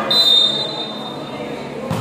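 Referee's whistle, one short shrill blast near the start, over the murmur of spectators in a large hall.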